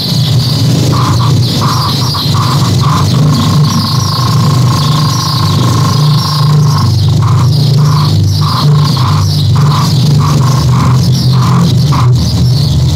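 Electro-acoustic improvised music: a loud, dense low drone under short, irregular electronic beeps. About three seconds in, one beep tone is held steady for nearly four seconds. Chirping, warbling high sounds run above it all.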